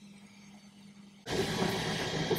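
About a second of very quiet room tone, then a FlashForge Finder 3 3D printer's fans come in suddenly, running with a steady whirring hiss as the print resumes after its pause.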